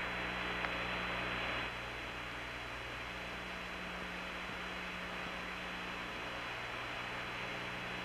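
Steady hiss and low mains hum of an open radio voice link with no voice on it. The hiss eases slightly about a second and a half in.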